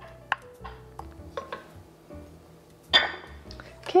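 A ceramic bowl tapping lightly against a stainless steel stockpot a few times as thick tomato puree is tipped in, with a louder, short noisy burst about three seconds in. Soft background music plays underneath.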